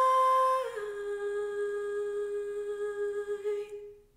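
A woman's voice, unaccompanied, holding a long sung final note. About a second in it steps down to a slightly lower pitch, holds it steadily, and then stops just before the end.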